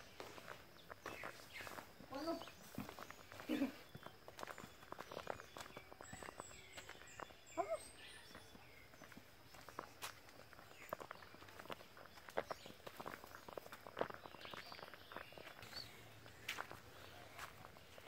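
Faint footsteps of a person walking on a dirt path and earth steps: irregular soft steps with light scattered clicks.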